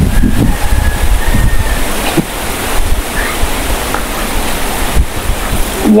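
Wind buffeting an outdoor clip-on microphone: an uneven rushing noise with a heavy low rumble.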